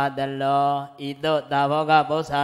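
A Buddhist monk's voice reciting a Pali scripture passage in a slow chant, long syllables held on a nearly level pitch, with a short break about a second in.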